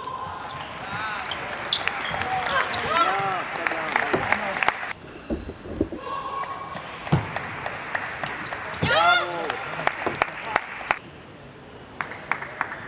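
Two table tennis rallies: a celluloid-type ball clicking off bats and table in quick, uneven strokes. Short squeaky or called sounds come between the hits, and the play stops about five seconds in and again near the end as each point is won.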